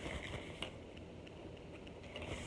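Faint rustling and crinkling of a nylon drawstring bag being handled close to the microphone, with a small click about half a second in.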